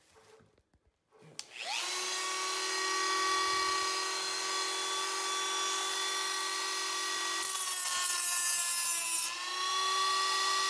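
Dremel rotary tool with a cutoff wheel switched on about a second in, spinning up to a steady high whine. From about two-thirds of the way through, the wheel grinds against a protruding nail tip with a gritty hiss while the motor's pitch sags under the load, then the pitch picks back up near the end.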